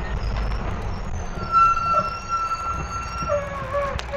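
Mercedes-Benz OH-1115L-SB bus running with a steady low rumble. A high squeal comes in about a second and a half in, holds, then slides down in pitch and fades near the end.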